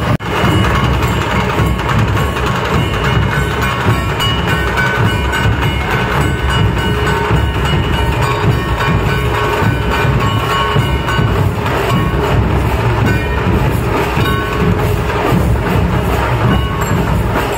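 Loud dhol-tasha drumming: a troupe of large barrel dhols played together, dense and heavy in the low end, with a brief break right at the start.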